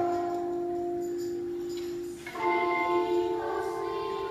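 A group of children singing: one long held note that ends about two seconds in, then after a brief gap they come in on a new held chord.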